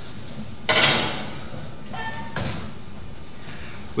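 Oven door and rack being worked to put a foil-covered baking dish in: a loud metallic clunk about a second in that rings away briefly, then quieter scraping and a knock about halfway through.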